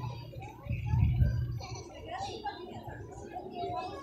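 Scattered chatter of passers-by, children's voices among them, with a low rumble swelling about a second in, the loudest moment.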